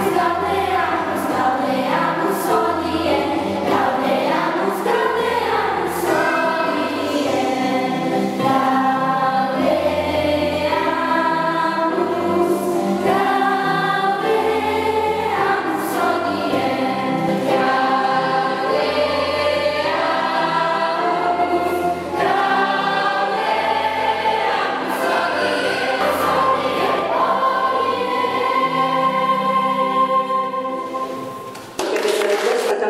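Children's choir singing a song in harmony, with instrumental accompaniment carrying a low bass line; the voices close on a held note near the end.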